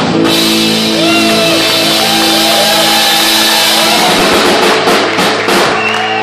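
Live rock band playing loud: electric guitar, bass guitar and drum kit with a wash of cymbals, a long held chord with bending lead-guitar notes over it.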